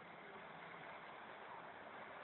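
Faint, steady running of a double-decker bus's engine as the bus drives closer, growing slowly louder.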